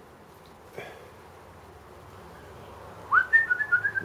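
A man whistling a few notes in the last second: a quick upward slide, then a short wavering phrase. Before that there is only a faint click from handling about a second in.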